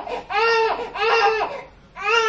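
A two-month-old baby crying in short, high wails, two of them about half a second each, trailing off near the end.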